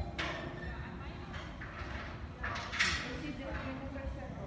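Indistinct nearby voices in an indoor riding arena, over the soft low hoofbeats of a horse cantering on the sand footing.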